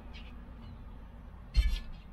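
The plastic instrument-cluster shroud of a Volvo 940 dashboard being handled, with one short knock and rattle about one and a half seconds in, over a low steady background hum.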